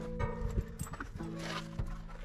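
Background music with sustained low notes, under a few irregular knocks and clatters as a bicycle is loaded into a car's boot.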